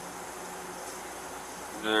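Steady low hum and hiss of outdoor parking-lot background noise, with a voice starting right at the end.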